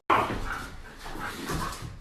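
Siberian husky making short whining, talking-style vocal sounds, loudest just after the start, with fainter calls and breathing after.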